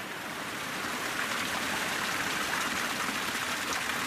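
Spring-fed creek water running and splashing over ice, a steady rushing sound that grows a little louder about a second in.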